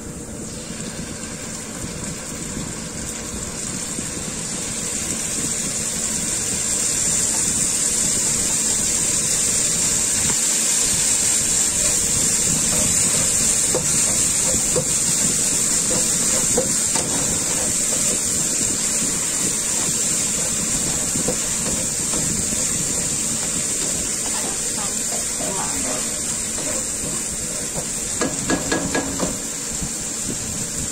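Minced garlic and satay hot-pot paste sizzling in hot oil in a nonstick frying pan. It is a steady hiss that grows louder a few seconds in, with a spatula stirring and scraping the pan.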